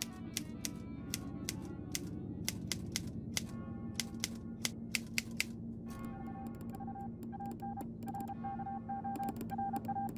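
Manual typewriter keys clacking in quick, irregular strokes, thinning out after about six seconds. A low, steady drone runs underneath. From about six seconds in, a run of short high beeps joins in.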